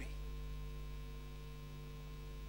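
Steady low electrical mains hum, several fixed tones held without change, with nothing else sounding.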